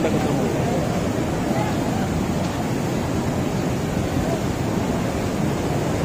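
Steady rush of a large waterfall and river, with a crowd of people chattering over it.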